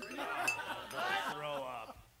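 People's voices, talking and laughing at a low level, with a brief high clink about half a second in. It all drops away at the end.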